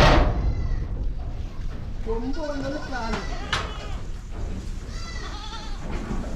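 Goats bleating, several wavering calls from the herd about two seconds in and again near the end. A single loud knock right at the start.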